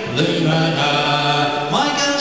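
A man singing a folk song live, holding one long low note that glides up into the next note near the end.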